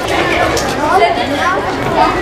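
Crowd of children chattering and calling out all at once, many overlapping voices with no single one clear.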